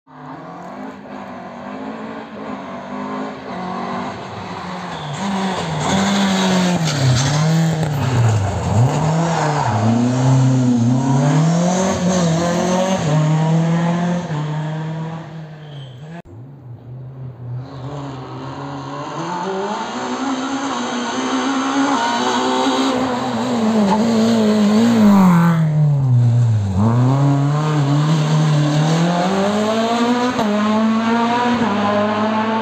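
Rally car engine heard through the trees on a winding mountain stage, revving hard and dropping back again and again through gear changes and bends, growing louder as it climbs toward the spot. The sound falls away briefly about halfway through, then builds again.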